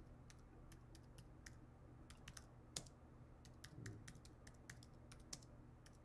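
Faint, irregular clicking of computer keyboard keys as a web search is typed in.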